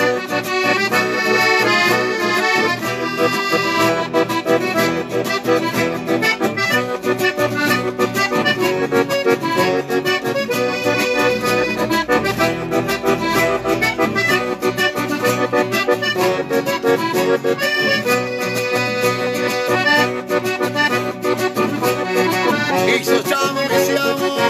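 Instrumental chamamé: an accordion playing a lively melody over steady acoustic guitar strumming, with no singing.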